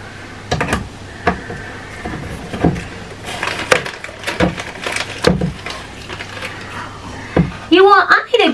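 Handheld manual can opener clicking and clunking on a tin can in irregular strokes. The opener is bent, so it grips and cuts badly.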